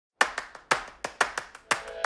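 Clap percussion in a steady rhythm: a sharp clap about every half second with lighter claps in between, opening a music track.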